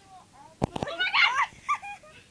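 A few quick thumps just after half a second in, then a loud, high-pitched excited shout of 'Oh my god! I got it!' with squealing rises in pitch.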